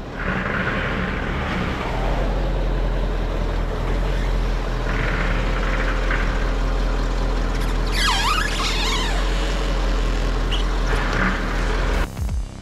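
A diesel engine, likely the Touareg's 4.2 TDI V8, idling steadily. About eight seconds in there is a brief high squeal that dips and rises in pitch.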